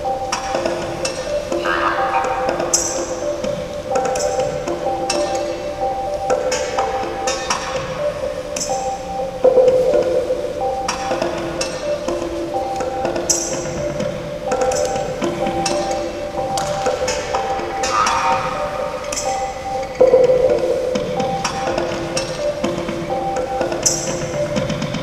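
Music of sustained tones in a repeating pattern, with light clicks and taps scattered over it; it grows louder suddenly about ten seconds in and again about twenty seconds in.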